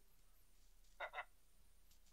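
Near silence: quiet room tone, broken about a second in by two quick, faint sounds from a voice, like a short breathy chuckle.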